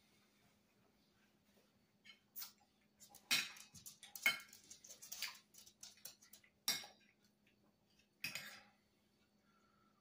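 A utensil clinking and scraping against a baking pan while lasagna is dug out: a string of sharp clinks from about two seconds in until near the end, the loudest few a second or so apart.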